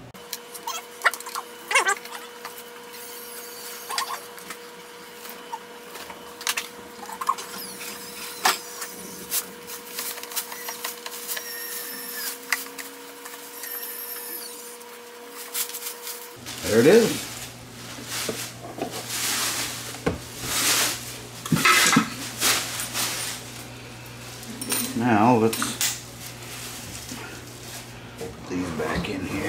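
Scattered clicks and knocks of a screwdriver and plastic housing parts as a Cuisinart drip coffee maker is reassembled, with a faint steady hum that stops about sixteen seconds in. Quiet voices come in over the handling in the second half.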